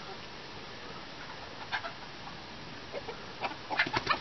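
Chickens clucking: a few short, separate clucks starting a little way in, coming more often near the end, over a steady faint background hiss.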